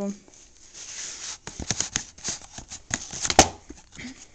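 Cardboard slipcover of a DVD box set being slid off and the packaging handled: a run of scraping rustles and small clicks, with one sharp click near the end.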